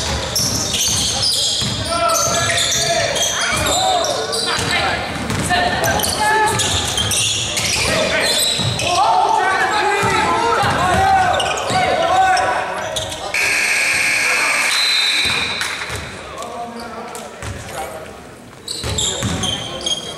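Indoor basketball game: the ball bouncing on the hardwood court and players' voices calling out, echoing in a large gym. About two-thirds of the way through, a steady high tone sounds for about two seconds.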